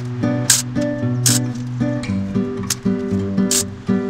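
Background music: held, pitched notes that change every half second or so, with a few sharp percussive hits.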